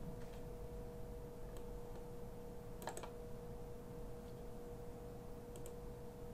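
A few faint computer keyboard and mouse clicks, about a second and a half in, around three seconds in and near the end, over a steady faint hum.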